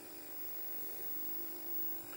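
Faint, steady electrical hum with a few held tones from a television set, with no speech.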